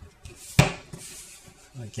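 A single sharp knock of a hard plastic rubber-band loom against a tabletop about half a second in, followed by a brief rustle.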